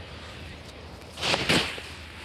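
A short whooshing rush in two quick surges about a second in, as a man jumps down a short drop and lands.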